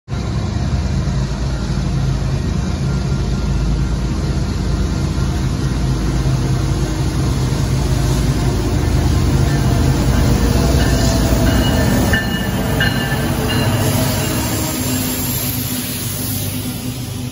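Diesel-hauled freight train approaching, the locomotive's engine rumble growing louder as it nears, then the lead locomotive passing close by near the end.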